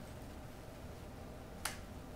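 A single sharp click about one and a half seconds in, over a faint steady background hum: a computer input click as a command is entered into a terminal.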